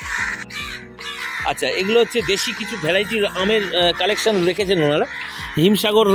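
Harsh, crow-like bird calls in the first second, then a man's voice and a wavering, sung-sounding voice line from about a second and a half in.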